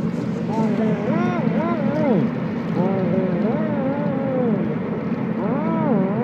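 A man's voice making wordless gliding vocal sounds that swoop up and down in pitch, over the steady low drone of a car cabin.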